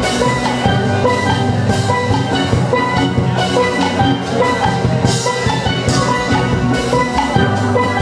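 Steel orchestra playing: an ensemble of steel pans, high tenor pans down to low barrel-sized bass pans, sounding a fast run of notes over a steady drum beat.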